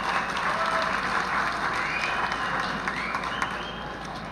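Audience applauding, the clapping slowly dying away.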